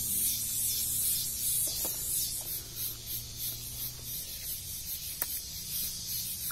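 Leafy cannabis branches rustling as they are handled, over a steady high hiss, with a few faint clicks.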